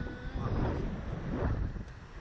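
Wind buffeting the microphone of the Slingshot ride's onboard camera as the capsule swings through the air, a low rushing rumble that swells twice.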